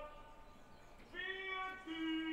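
A singing voice from a played-back commercial, echoing through the hall's speakers. After a short lull, one long held note starts about a second in and steps down to a lower held note near the end.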